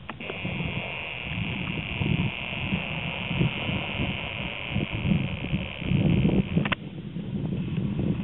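The camera's own zoom motor whirring steadily as it zooms in, stopping with a click near the end, over low wind rumble on the microphone.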